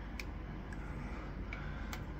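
Low, steady room noise with two or three faint clicks, one near the start and one near the end.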